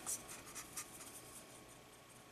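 Faint scratchy swishes of a small paintbrush scrubbing wet watercolor paint around the plastic mixing well of a Prang watercolor tin, a few quick strokes that thin out.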